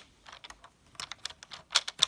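Light, scattered clicks and taps of plastic Lego pieces as fingers press and align a landing-gear wheel assembly.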